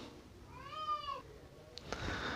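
A single high-pitched cry of under a second, about half a second in, rising and then falling in pitch; a short click follows near the end.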